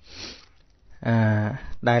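A man's quick intake of breath through the nose, a short sniff in the first half second, followed by his voice speaking from about a second in.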